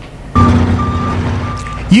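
Utility vehicle's engine running, starting abruptly about a third of a second in. Over it, a high warning beeper sounds three times at even spacing.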